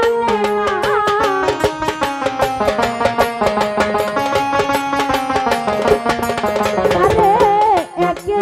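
Bengali Baul folk music with no singing: an electronic keyboard plays the melody over a fast, steady tabla and percussion rhythm.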